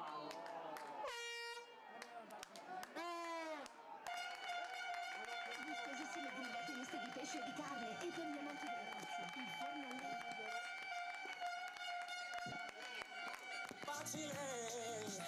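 Air horns sounding from the stands after a goal, over shouting voices: a short steady blast about a second in, a second blast that bends in pitch, then one held steadily for about ten seconds.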